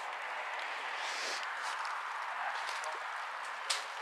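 Steady outdoor background hiss with a few faint ticks, and one sharp click near the end.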